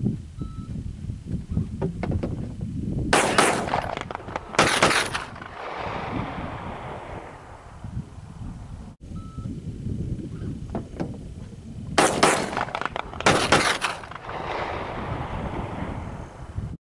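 Gunfire sound effect: two short bursts of rapid shots about a second and a half apart, each trailing off in an echo over a low rumble. The same pair of bursts repeats about nine seconds later.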